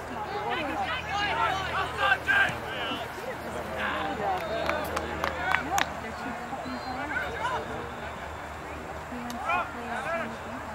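Several voices of players and spectators at a youth soccer game calling and shouting over one another, loudest in the first few seconds, with a few sharp knocks around the middle.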